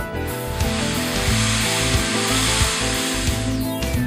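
Background music, with a rustling hiss of about three seconds over it as a large sheet of chart paper is turned over.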